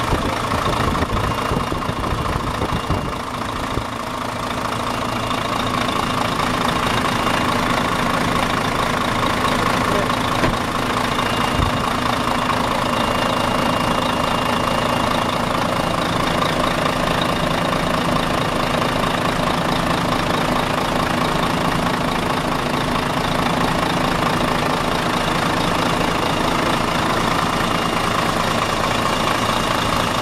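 Iveco EuroStar 480's Cursor 13 inline-six turbodiesel idling steadily, heard close up at the open engine bay with the cab tilted.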